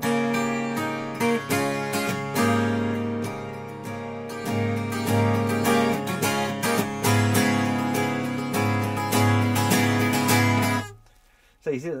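Twelve-string acoustic guitar (Maton Messiah), tuned down a semitone to E-flat, strummed and picked on a D chord shape moved up the neck. The strumming builds up rhythmically, then is cut off sharply about eleven seconds in.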